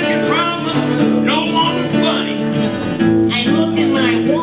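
Live acoustic blues: two acoustic guitars strumming a steady chord pattern, with a harmonica playing bending phrases over them.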